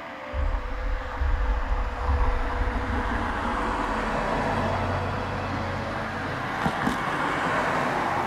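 A motor vehicle on the road near the bus shelter: a low engine rumble with tyre and road noise that builds and then eases near the end. A couple of small clicks come near the end.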